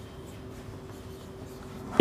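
Marker pen writing a word on a whiteboard: the felt tip rubbing across the board, faint and steady, over a low steady hum.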